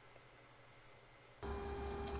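Near silence, then a steady low background hum with a faint steady tone starts about one and a half seconds in.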